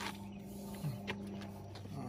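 A few light clicks and taps from hands handling the spoiler and a tape measure on the trunk lid, over a steady low hum.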